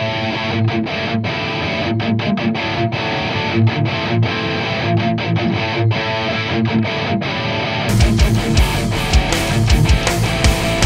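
Electric guitar played through a Kemper profile of a Mesa Boogie Triple Crown TC-50 amp, a distorted rock riff with short choppy stops between phrases. About eight seconds in, the full band backing with drums comes in under it.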